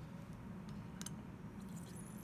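Glassware and a plastic wash bottle being handled: one sharp click about a second in and a few fainter ticks, over a low steady room hum.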